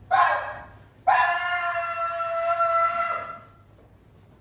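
A person's voice: a short cry right at the start, then one long, high, steady held call of a little over two seconds, ending about three and a half seconds in.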